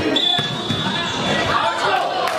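Light volleyball being struck during a rally, sharp ball hits echoing in a large hall, over players' voices calling out. A thin high tone sounds for about a second near the start.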